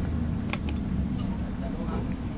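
Steady low rumble of road traffic, with a couple of short sharp clicks about half a second in.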